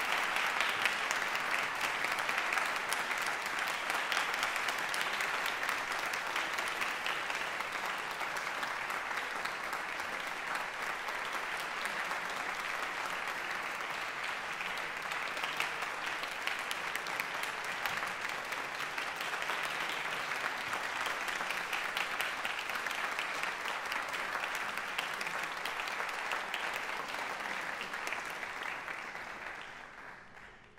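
Audience applauding steadily after a performance, the clapping dying away near the end.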